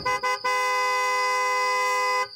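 Car horn sounded twice in quick short toots, then held in one long steady honk of nearly two seconds.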